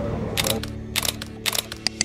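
Camera shutter clicking several times in quick succession over soft background music.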